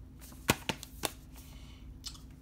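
Metal Blu-ray steelbook case being closed: a sharp click about half a second in, then two lighter clicks.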